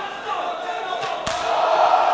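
A single sharp smack of an open-hand knife-edge chop landing on a wrestler's bare chest about a second in, followed at once by the crowd's loud, sustained shout.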